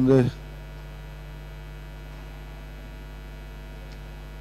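Steady low electrical mains hum on the recording, left bare in a pause in the talk. A man's voice trails off just at the start.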